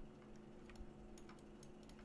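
Near silence: room tone with a faint steady hum and a few soft, scattered clicks from a computer mouse and keyboard.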